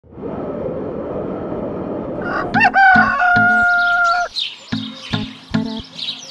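A rushing noise, then a rooster crowing about two and a half seconds in: a rising start and a long held note lasting about a second and a half. Under and after it, a plucked guitar and bass line sets in with a steady beat.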